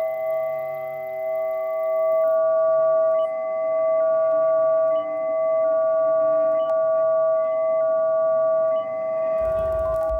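Electronic music made of sustained pure, sine-like tones sounding together as a chord. A few pitches hold throughout while others change every second or two. Near the end a low bass rumble and clicks come in.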